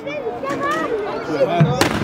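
Several voices calling out together, then a single sharp black-powder musket shot near the end.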